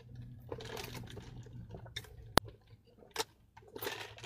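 Sipping a drink through a straw from a plastic cup: quiet sucking and liquid sounds over a faint low hum. A single sharp click a little past halfway is the loudest sound.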